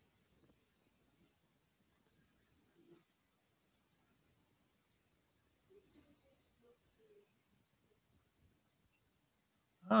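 Near silence: faint room tone with a thin steady high hiss and a few faint soft sounds about six to seven seconds in. A man's voice says "Oh" right at the end.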